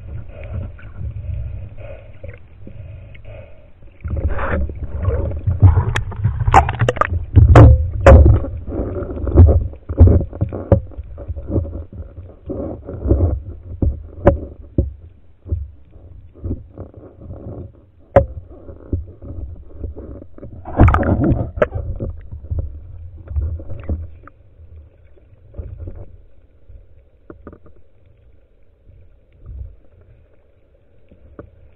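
Water sloshing and rushing against an underwater camera on a speargun as the diver moves, with a low rumble and scattered sharp knocks and clicks. It is loudest from about four to ten seconds in, with another loud stretch around twenty-one seconds, and dies down towards the end.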